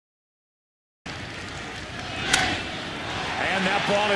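Silence for about a second, then the noise of a ballpark crowd on a TV broadcast. About a second later comes a single sharp crack, the loudest sound, from a baseball bat hitting the ball, and the crowd swells after it. An announcer's voice starts near the end.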